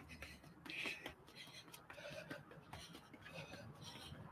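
Faint, quick breathing of a woman exerting herself, with light, soft footfalls on an exercise mat from a fast out-out-in-in jumping drill.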